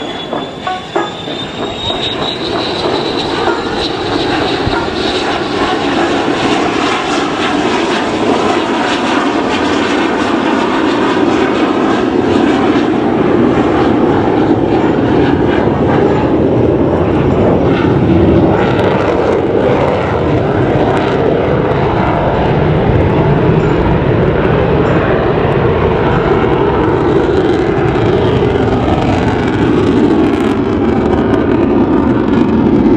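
F-16 fighter jet's single turbofan engine, loud jet noise building over the first few seconds and then steady. A high whine rises in pitch near the start.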